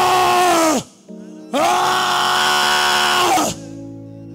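A man's long, loud, held cries of "Oh!" into a microphone. One ends about a second in, and a second runs from about a second and a half until shortly before the end. Each dips in pitch as it dies away. Steady sustained music plays underneath.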